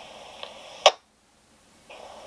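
Handheld radio receiver's speaker hissing faintly at the tail of a received transmission, then one sharp click just before a second in as the signal drops out. After a moment of dead silence, the faint hiss returns near the end.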